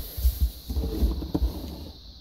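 Hand sweeping Lego minifigures and pieces off a tabletop: a run of low bumps, with a couple of light plastic clicks.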